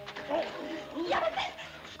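Men's shouts and strained cries in a scuffle: two short bursts of yelling that rise and fall in pitch.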